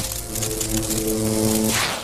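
Intro sound effect with music: a held chord of several steady tones under a dense, crackling electric-style hiss, the kind laid over energy and lightning visuals. It cuts off sharply near the end.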